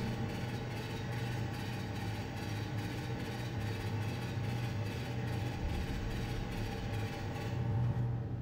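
A steady low rumble like a running engine, a train sound effect under the cartoon train, growing a little louder near the end as the engine rolls in.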